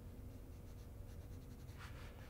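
Faint strokes of an Apple Pencil tip sliding across an iPad's glass screen while shading is drawn, over a low steady room hum.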